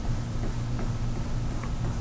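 Faint scratches of a bristle brush dragging oil paint across a canvas in short strokes, over a steady low hum.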